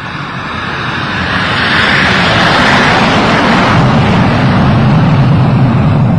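Loud rushing roar of a jet airliner's engines, swelling over the first two seconds or so and then holding steady.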